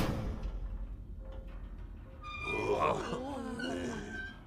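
Cartoon sound effects: a clunk at the start and a low mechanical rumble, then steady chiming musical tones with wavering, voice-like cries and grunts about halfway in.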